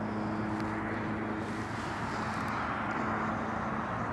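Steady distant engine hum over outdoor background noise, the low drone fading out near the end.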